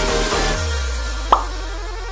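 Electronic background music that thins out about half a second in to a held low bass note, with a single short plop sound effect a little past the middle.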